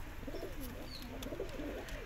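Domestic pigeons cooing: a run of soft, low, wavering coos.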